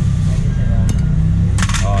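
Light metallic clinks of a motorcycle cylinder head and small engine parts being handled: one sharp click about a second in, then a quick cluster of clinks near the end, over a steady low hum.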